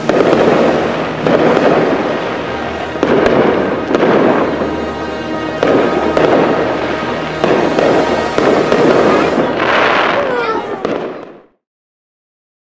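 Aerial fireworks shells bursting in a steady run of loud booms, one every second or two, each with a rolling echo. About ten seconds in comes a brighter crackling burst with falling whistles, then the sound cuts off abruptly.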